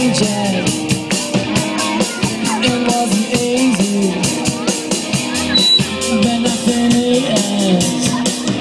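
Live rock band playing: drum kit keeping a steady beat under electric guitars and bass guitar, heard from within the audience.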